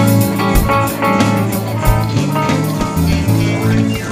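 Rock band playing live without vocals: electric guitars and bass guitar over a steady drum beat.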